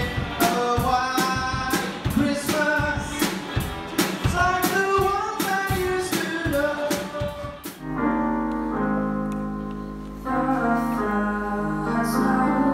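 Live school band playing: a male vocalist sings over a drum kit and electric guitars. About eight seconds in the song cuts off abruptly, and steady held notes over a low hum follow.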